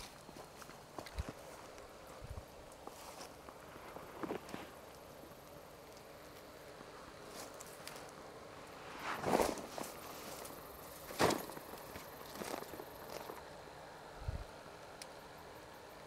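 Faint footsteps and rustling through dry grass and leaf litter, with a few louder scuffs about nine and eleven seconds in.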